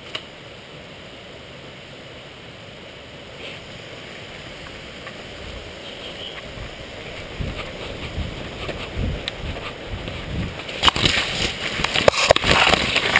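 Leaves and branches rustling and scraping close against a head-mounted camera as its wearer walks and then pushes into dense bushes. Heavy footfalls build up over the second half, and about a second before the end the rustling becomes loud and crackling.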